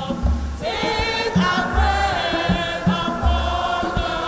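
A congregation singing a hymn together, accompanied by a steady low drum beat that thumps about once a second.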